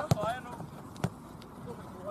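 A football kicked twice: two short sharp thuds about a second apart. A player shouts at the very start.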